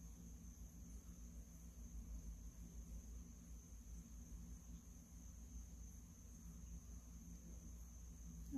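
Near silence: room tone with a steady low hum and a faint, steady high-pitched whine.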